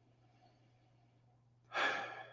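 A person exhaling audibly in one breathy sigh near the end, just after a sip of neat whisky; before it, near silence.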